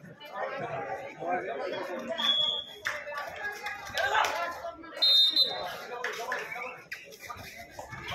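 Voices of players and onlookers calling out during a kabaddi raid, with two brief high-pitched tones about two and five seconds in.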